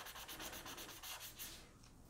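Paper blending stump rubbing over pencil graphite on drawing paper, a faint scratchy rubbing as the shading is smudged. It dies away about one and a half seconds in.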